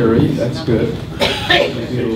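A man's voice through a handheld microphone, with a cough a little over a second in.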